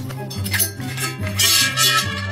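Background music with a steady beat, and a brief hiss about one and a half seconds in.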